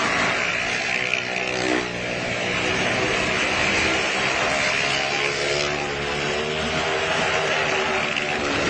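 Car and motorcycle engines running hard as they circle the vertical wall of a well-of-death drum: a loud, steady drone whose pitch wavers a little.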